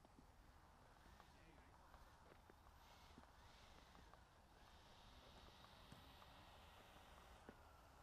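Near silence: faint outdoor background with a few small clicks.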